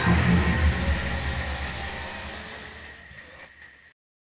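Animated logo sting: a deep boom that fades away over about three seconds under a faint held high tone, with a short hiss near the end before the sound cuts off suddenly.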